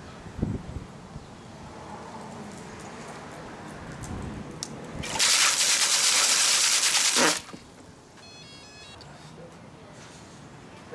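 An FPV racing quad's propellers spinning under about seven inches of water in a plastic tub, churning and spraying the water loudly for about two seconds starting some five seconds in, then stopping suddenly. Low knocks and sloshing from the drone being set into the water come before it.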